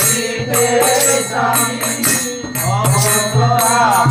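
Devotional kirtan: a man's voice sings a slow, bending melody over a steady low drone, with rhythmic metallic percussion keeping time.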